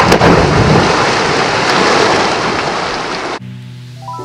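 A person jumping into a backyard swimming pool: a loud splash on entry, then rushing, splashing water for about three seconds, which cuts off abruptly. Quiet music starts near the end.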